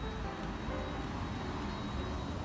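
Steady street noise from road traffic, a low rumble, under soft background music.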